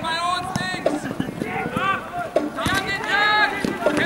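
Several people shouting and calling out loudly in long, arching calls, with a few short knocks among them.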